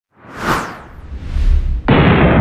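Intro sound effects for an animated subscribe-button logo: a swoosh about half a second in, then a low rumble that builds and breaks into a sudden heavy hit just before the end.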